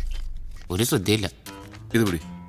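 Film soundtrack: short bits of speech over background music, with a low bass note that fades out early on.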